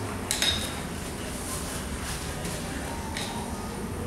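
A metal fork clinks once against a plate with a brief ringing, followed by a fainter tap about three seconds in.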